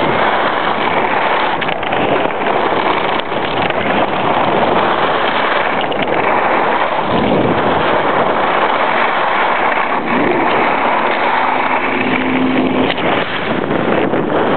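Steady rush of wind on a compact camera's microphone while skiing downhill, mixed with the hiss of skis running over groomed snow.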